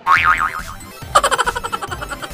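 A springy cartoon boing with a wobbling pitch right at the start, followed about a second in by a fast run of pulsed electronic game tones from arcade basketball machines.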